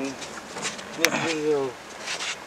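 A man's voice making a wordless, drawn-out sound that falls in pitch, with a sharp click about a second in.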